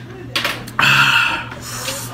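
A person lets out a heavy, breathy sigh about a second in, reacting to the burn of very spicy noodles, after a few small mouth clicks.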